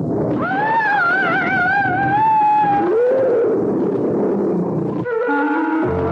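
A long, high, wavering cry with a shaking pitch, then a lower cry that rises and falls about three seconds in, a drama's climactic shriek as the creature closes in. Near the end a sustained musical sting begins.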